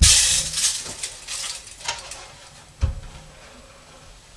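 Drums being shifted and handled: a loud clatter at the start, then a few lighter knocks and rustles, and a deep thump of a drum knocked or set down about three seconds in.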